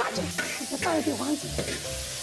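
Pieces of salted pork sizzling in a hot wok while a metal spatula stirs them.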